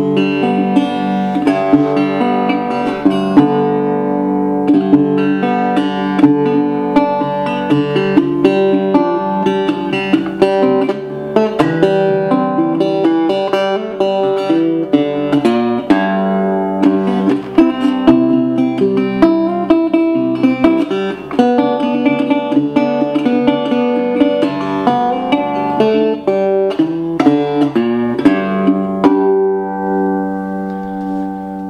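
National RadioTone single-cone resonator guitar played by hand in a continuous run of picked notes and chords. Near the end a last chord is left ringing.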